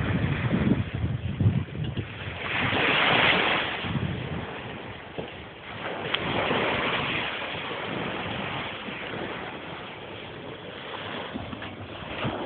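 Surf breaking and washing up on a beach, swelling twice, at about three and about six seconds, then settling to a steady wash. Wind buffets the microphone in the first couple of seconds.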